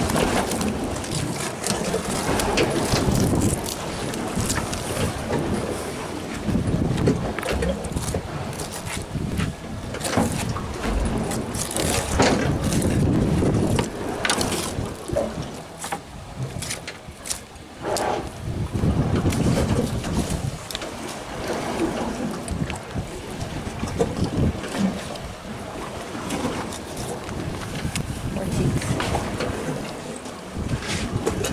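Wind on the microphone and water moving around an open boat, with scattered knocks and scrapes as halibut are filleted with a knife and handled on the boat's metal fish-cleaning table.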